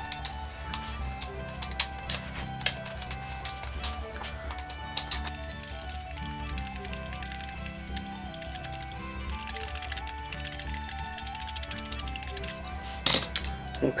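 Background music plays throughout over bursts of quick light clicking from a mandolin tuner's replacement gear being spun hard on its post, a test of whether the new gear meshes and turns cleanly. The clicking is densest about two-thirds of the way in.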